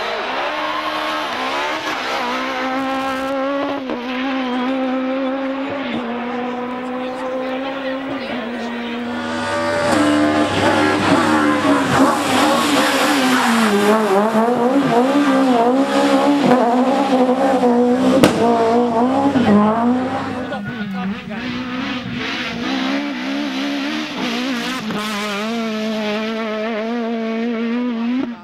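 Rally car engines at high revs, several cars in turn, the pitch climbing and dropping with gear changes and throttle. About ten seconds in comes a louder stretch of fast, repeated rev swings that lasts about ten seconds.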